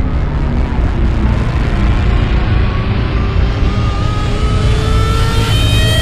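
Film-trailer sound design: a deep, steady rumble with a pitched whine that rises slowly and grows louder over the last few seconds, building to an abrupt cut at the very end.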